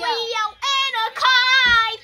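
A boy singing in three short phrases, the last a long held note, with a brief low thud near the end.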